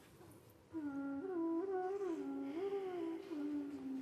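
A voice humming a slow, wavering tune that starts about a second in and carries on, its pitch stepping gently up and down.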